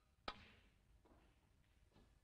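A single sharp click of a snooker shot, about a quarter of a second in, against near silence.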